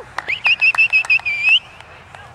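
A high warbling whistle, wavering about seven times a second, that starts shortly after the beginning and lasts just over a second.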